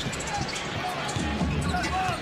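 A basketball being dribbled on a hardwood court over arena crowd noise, with faint music playing.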